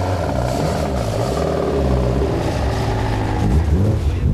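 Racing touring cars' four-cylinder engines, a BMW M3 and an Opel Kadett, revving as the cars pull away, the pitch dipping and rising with the throttle.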